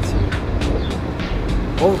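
Background music under a steady low hum, with faint pitched sounds in the middle; a man's voice comes in right at the end.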